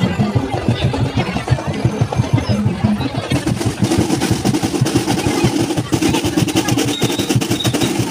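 Marching band drum line playing a fast snare drum cadence, thickening into a dense roll about three seconds in, with a steady held note joining it.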